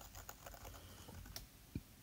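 Faint, scattered taps and ticks of a finger on an iPad touchscreen as it scrolls, with a couple of slightly sharper clicks in the second half.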